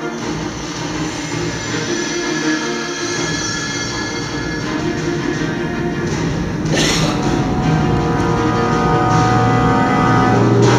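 Dramatic film-trailer soundtrack played over loudspeakers: sustained orchestral music over a low rumble, with a rushing swell about seven seconds in, after which the music grows louder.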